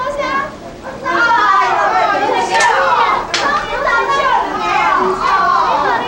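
Women's high, excited voices talking over each other in a lively greeting, with a couple of short sharp clicks near the middle.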